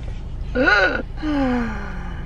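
A person's voice makes a short exclamation that rises and falls in pitch, then a long, drawn-out vocal sound sliding downward, gasp-like, with a steady low car-cabin rumble underneath.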